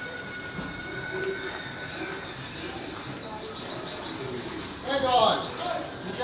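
Small birds twittering in a quick series of short high chirps, with a louder voice-like call near the end.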